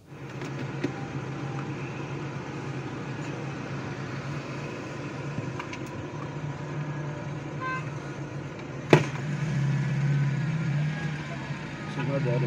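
Inside a moving car, recorded on a phone: a steady mix of engine and road noise, with one sharp knock about nine seconds in.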